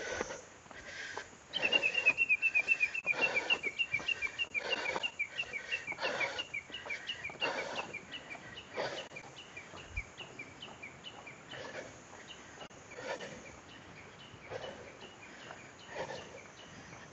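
A bird calling a long, rapid series of short, high chirping notes that starts about a second and a half in, is loudest at first and fades out after about ten seconds. Under it are faint, evenly paced footsteps on a stone-paved path.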